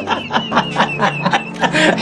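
A man laughing: a run of short chuckles, about five or six a second.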